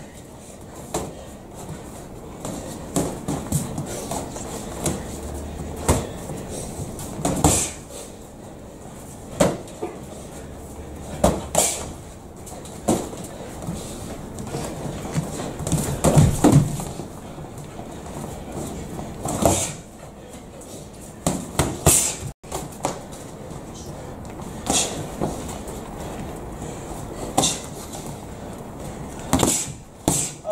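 Boxing gloves smacking against gloves and headgear during sparring: sharp, irregular hits every second or two, with a heavier flurry about halfway through, over low background voices.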